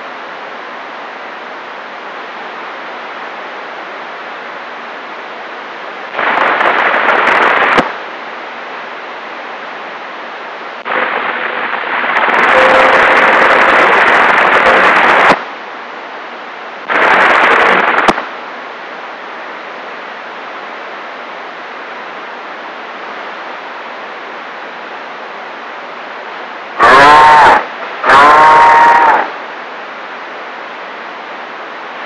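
CB radio receiver hiss with the squelch open, broken by loud bursts of static as stations key up: one about six seconds in, a longer one from about eleven to fifteen seconds, a short one near seventeen seconds, and two close together near the end that carry a wavering pitched sound.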